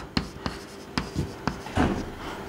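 Chalk writing on a blackboard: a handful of short, sharp chalk taps and strokes as a word is written.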